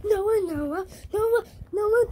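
A child's voice wailing drawn-out vowel sounds in a sing-song chant: one long wavering note, then two shorter ones.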